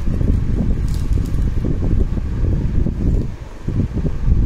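Loud, uneven low rumbling noise on the microphone, with a short drop in level about three and a half seconds in.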